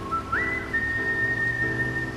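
A whistled melody over soft instrumental backing music: a short lower note, a quick slide up, then one long held high note.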